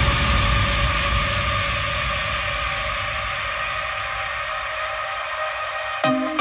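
Electro progressive house breakdown with no beat: a wash of noise and held synth tones slowly dying away after a crash, over a low rumble that fades out.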